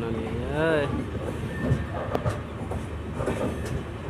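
Sarnath Express passenger coach running, heard from its open door: steady running noise with scattered sharp clicks of wheels over rail joints. A voice calls out briefly in the first second.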